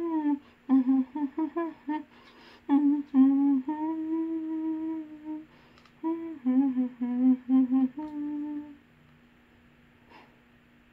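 A woman humming along to a song, in melodic phrases with several long held notes, stopping near the end; a short laugh follows. The tune is the anime opening she is hearing through her earphones.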